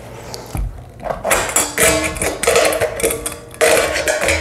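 A metal keg being pulled out and handled: a run of knocks and clanks starting about a second in, each with a short metallic ring.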